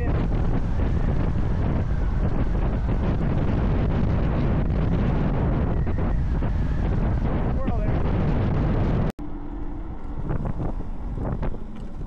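Wind buffeting the microphone on a fast-moving electric motorbike, a loud steady rush. It cuts off abruptly about nine seconds in to a much quieter stretch with a brief low hum.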